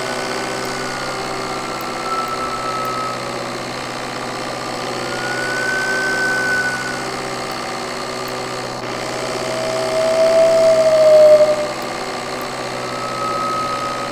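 Playback of a turbocharged engine recording: the engine runs steadily under a turbo whine made of two whistle tones, a higher one that drifts slightly up and down in pitch, and a lower one that swells loudest about ten to eleven seconds in. The whistles grow and fade as their levels are changed in a sound mix; this whistling is the unacceptable whine being troubleshot.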